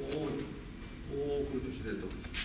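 A man's low voice making short murmured sounds without clear words, once near the start and again about a second in.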